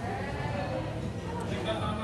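Indistinct voices of people talking in the background of a busy café, with no clear words.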